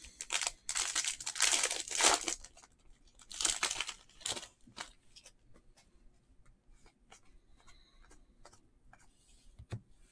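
Foil wrapper of a basketball trading-card pack being torn open and crinkled, several loud rips in the first four seconds or so. After that, faint light ticks as the stack of cards is flipped through by hand.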